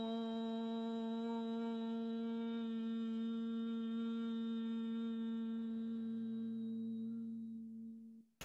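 A woman's voice holding the long closed-mouth 'mmm' of an Aum (Om) chant on one steady pitch, fading away near the end.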